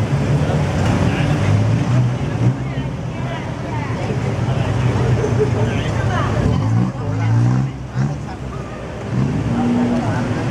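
Busy street traffic: car and taxi engines running steadily close by, with passers-by talking over it.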